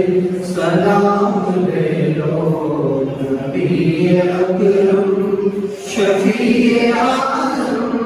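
A man chanting solo into a handheld microphone in long, held melodic phrases, with two short breaks between phrases.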